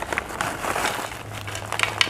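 Crispy peyek crackers sliding out of a crinkly foil snack bag onto a plate, with light scattered clicks as the pieces tumble and land.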